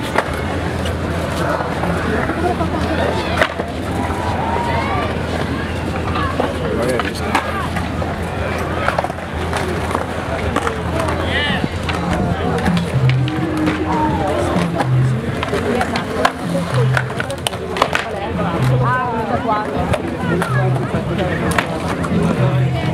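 Skateboards rolling on the concrete bowls of a skate park, with sharp clacks of boards. Crowd chatter from many people runs underneath.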